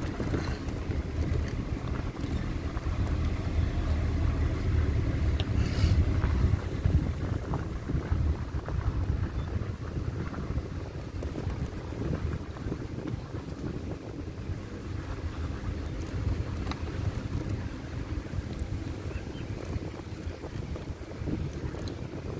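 A vehicle driving along a forest track: a steady low engine and road rumble, with wind buffeting the microphone.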